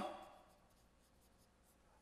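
Faint squeaks and strokes of a marker pen writing on a whiteboard, barely above room tone.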